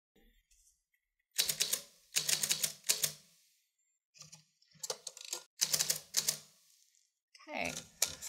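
We R Memory Keepers Typecast manual typewriter being typed on: about half a dozen quick runs of key strikes, with short pauses between them.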